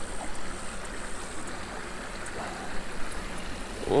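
Small creek running over a shallow riffle: a steady rush of flowing water.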